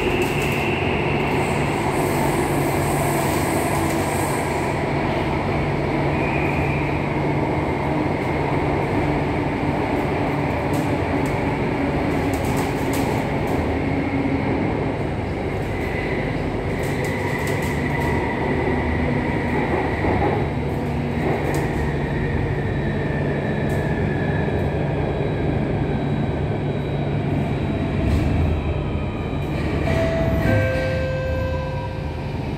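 Alstom Metropolis C830 metro train running through a tunnel, heard from inside the carriage: a steady rumble of wheels and running gear with a traction whine. The whine falls slowly in pitch in the second half as the train slows toward the next station.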